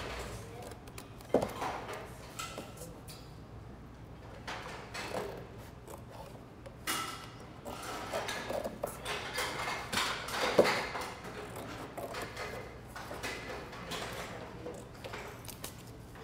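Scissors snipping through a thin cardboard cereal box, with irregular crunching cuts and the rustle of the box being handled. The sharpest snips come about a second and a half in and again about ten and a half seconds in.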